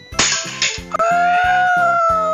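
Background music with a steady beat, broken a moment in by a sudden loud smack as the Pie Face Sky High game's spring-loaded plastic hand swings up into the child's face through the mask. From about a second in a long, slightly wavering high note is held.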